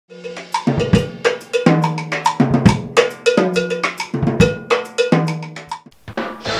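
Intro music: a drum-kit beat with cowbell-like pitched percussion hits in a repeating pattern, which drops out just before the end.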